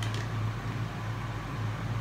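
A steady low hum with faint room hiss, continuing unchanged between words.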